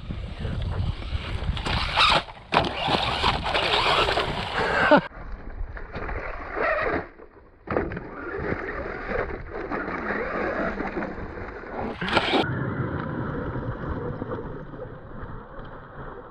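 Electric 1/10-scale RC truggy running over dirt: its motor whines as it speeds up and slows, and its tyres run on the ground, under wind noise on the microphone. The sound changes abruptly several times, near a third of the way in and again about three-quarters through.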